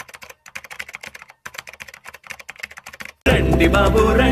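Rapid clicking of computer keyboard typing, stopping briefly about a second and a half in and then going on. Loud music cuts in abruptly near the end.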